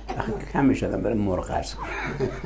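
Speech only: a person talking.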